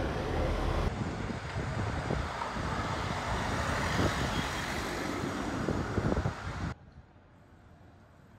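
Street traffic noise with a car driving past close by, its tyre and engine noise swelling in the middle. About seven seconds in it cuts off abruptly to a much quieter street hum.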